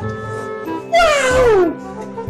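A cat meows once about a second in, a long call that falls in pitch, over background music.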